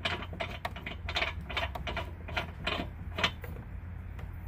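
A threaded license-plate mounting stud being screwed by hand into a threaded hole in a car's front bumper. Its threads give a run of small, irregular clicks and scrapes as it turns.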